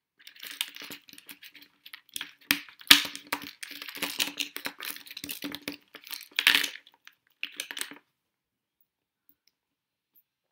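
Small plastic parts clicked and pressed together by hand: Lego pins pushed into the holes of a plastic servo jacket and a Lego beam fitted on, a quick run of clicks and rustles with the sharpest click about three seconds in. The sounds stop about eight seconds in.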